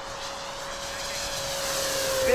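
Electric motor and four-blade propeller of a 1600 mm FlightLine Spitfire Mk.IX RC model running at speed in a low pass. It is a steady whine that grows louder as the plane closes in, and its pitch starts to drop near the end as it goes by.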